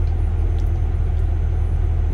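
Kenworth semi truck's diesel engine running parked, a steady low rumble heard inside the cab, during a parked DPF regeneration forced by a full diesel particulate filter.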